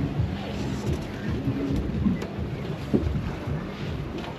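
Wind rumbling on the microphone aboard a small boat, a steady low noise, with faint voices underneath.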